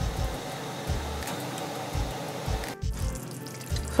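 A stainless steel pot of meat pepper soup boiling on a gas stove: a steady bubbling hiss with irregular low thumps, broken off briefly near the three-second mark.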